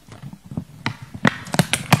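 A series of sharp knocks and clicks, a few at first and coming closer together near the end, as objects are handled and set down.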